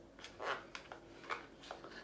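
A few short, faint scrapes and taps of a small cardboard box being handled and opened by hand.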